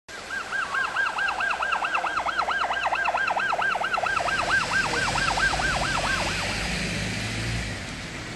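Police siren sounding a rapid yelp, its pitch rising and falling about four times a second, stopping about six and a half seconds in. Underneath, vehicle engines and tyres hiss on a wet road, growing louder in the second half.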